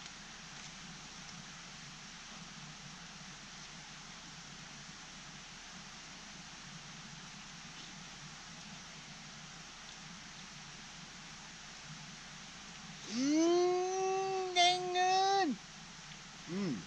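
Steady faint background hiss for most of it, then near the end a person's voice holding one long hummed note, like a drawn-out "mmm", for about two and a half seconds.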